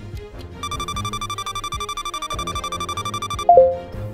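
Background music with a rapidly pulsing electronic beep, like an alarm, starting about half a second in: a countdown timer running out. Near the end it is cut off by a loud two-note tone stepping down in pitch that signals time is up.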